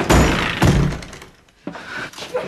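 Heavy thuds and a crash from a toilet-stall door and partitions being struck as a man forces his way into the stall, twice in the first second, followed by quieter scuffling of a struggle.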